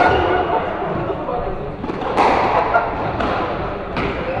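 A squash ball being struck by rackets and smacking off the court walls during a rally, in a ringing hall. There are four sharp hits at uneven intervals of about one to two seconds.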